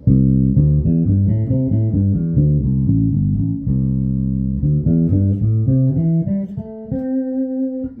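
Electric bass guitar, plucked, playing a quick run of single notes through the pentatonic scale, ending on one held note about a second before the end.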